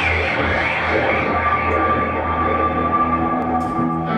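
Live band music: a slow, echoing passage of sustained electric guitar and effects tones, with one long held high note through most of it.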